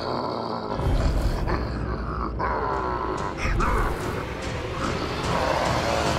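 Cartoon sasquatch-like monster growling and roaring, starting about a second in, with swells of loudness and a heavy low rumble in its first half.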